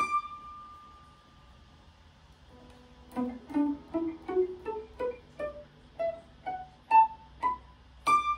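Guitar playing one ringing note that fades, then after a pause a steady run of about fourteen single picked notes, about three a second, climbing in pitch: the D major pentatonic scale played upward from B, its relative B minor.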